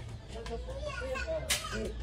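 Voices of people talking in the background over a steady low hum, with one sharp click about one and a half seconds in.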